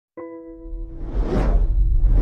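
Intro animation sound effect: a steady synth-like tone starts just after the opening. A whoosh then swells up over a deep rumble, growing louder toward the end.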